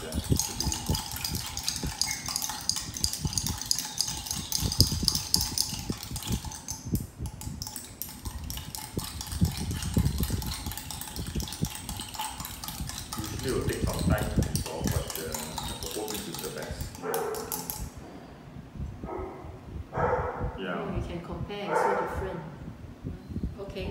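Detergent powder being stirred into water in small glass jars, the stirrers clinking and scraping rapidly against the glass for most of the stretch. It then eases off, with brief voice-like sounds near the end.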